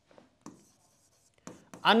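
Stylus pen writing on an interactive display screen: a few faint taps and a light high scratching as a word is written.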